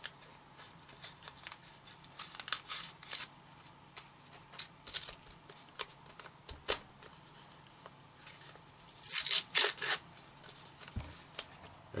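Sandpaper scratching in short hand strokes against a small model part, with a louder, longer rasp about nine seconds in.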